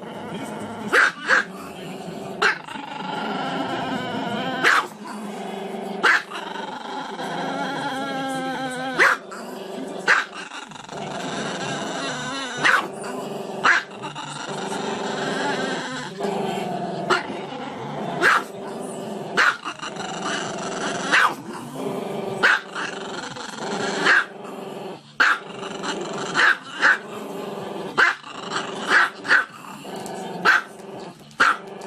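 A small black-and-tan Chihuahua howling with its muzzle raised: long, wavering, growly howls broken by short sharp barks every second or two.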